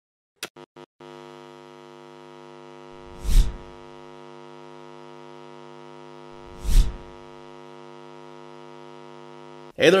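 Intro sound design: a few quick clicks, then a steady electronic drone that cuts off abruptly just before the end. Two whooshes swell and fade over it, about three and a half seconds apart, and these are the loudest sounds.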